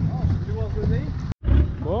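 An off-road 4x4 engine runs with a low rumble under people's voices. The sound cuts out for a moment a little past halfway, then the engine comes back louder.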